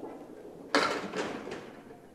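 Candlepin bowling ball rolling down a wooden lane, then striking the rack of candlepins about three-quarters of a second in: a sharp, loud crash followed by two more clattering hits as pins knock into each other and fall, dying away.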